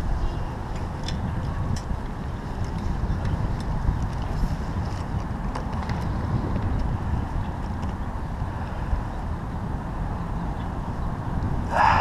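Steady low rumble of wind buffeting the microphone of a head-mounted action camera, with a few faint ticks from handling.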